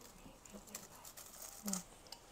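Faint handling noise: a few soft ticks and light rustles, with a brief hum of voice near the end.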